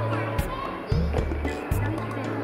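Light-hearted background music with hand percussion over a repeating bass line, keeping a steady beat.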